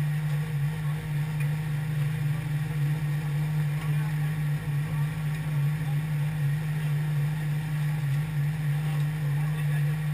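A steady low hum that does not change in pitch or level, like an engine or generator running at a constant speed.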